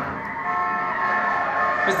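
Film soundtrack playing: vehicle noise with steady high tones that come in about half a second in.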